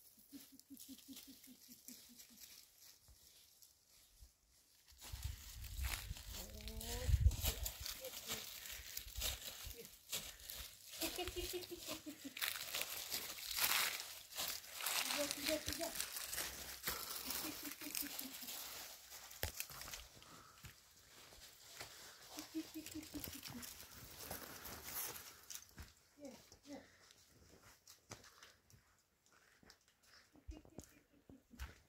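Footsteps crunching over dry leaves and loose stones on a steep dirt path, the crackle going on steadily from about five seconds in and fading near the end. Short pitched calls come and go over the footsteps, with a brief low rumble about seven seconds in.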